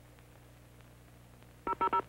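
Touch-tone telephone being dialed: a quick run of short two-tone beeps starts near the end, over a faint steady hum.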